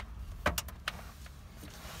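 A few light clicks and taps from a hand moving on a car's steering wheel, over a faint low steady hum in the car cabin.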